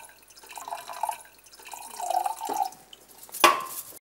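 Water running from a kitchen tap into a stainless steel sink and into a small brass pot being filled under it, splashing unevenly, with one louder burst of sound about three and a half seconds in.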